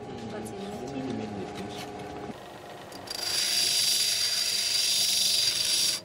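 Tourmaline crystal being ground against a water-fed lapidary grinding wheel: a loud, hissing scrape with a steady high whine, starting about three seconds in and cutting off abruptly at the end. Voices are heard before it.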